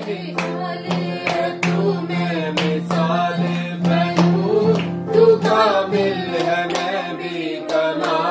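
A worship song sung to an acoustic guitar strummed in a steady rhythm, with held, gliding vocal notes.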